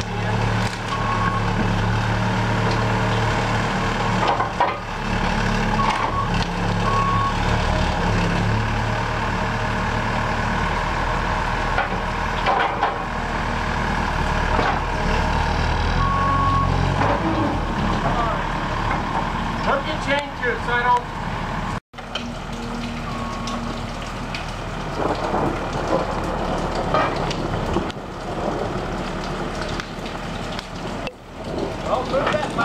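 Skid-steer loader's diesel engine running under load as it pushes and lifts tree stumps, its engine speed rising and falling, with a few short high beeps. Near the end the engine is lower and duller.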